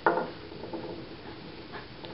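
Takli support spindle with a brass whorl spinning on its tip on a wooden tabletop, a faint steady whir after a short knock at the start, as twist runs into cotton yarn.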